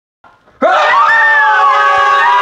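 Several people screaming together at full voice, starting suddenly about half a second in after a moment of silence.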